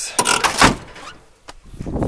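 A C3 Corvette's door being swung and shut: a short noisy clatter in the first half-second or so, then quieter.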